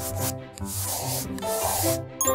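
Scratchy rubbing sound effect, like a marker scribbling, as the thumbs-up is drawn: a couple of quick strokes, then one longer stroke from about a third of the way in, over light music with a low bass line.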